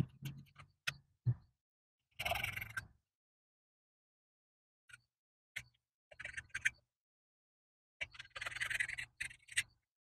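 Screwdriver tip dragged along masking tape laid over the edge of a cast-iron engine block, scoring and tearing off the excess tape: scattered clicks and taps, with two longer scraping rasps about two seconds in and again near nine seconds.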